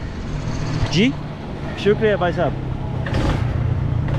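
Small motorcycle engine running with a steady low hum.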